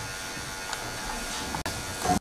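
Electric hair clippers buzzing steadily while cutting hair, with a brief dropout about one and a half seconds in.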